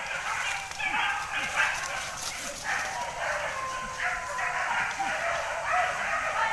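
Hunting dogs barking repeatedly in short calls a fraction of a second apart, during a chase after a wild boar.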